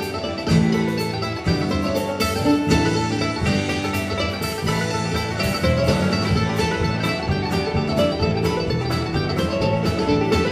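Live bluegrass band playing: mandolin, banjo, acoustic guitar and bass over a steady drum-kit beat, recorded from the audience in a theatre.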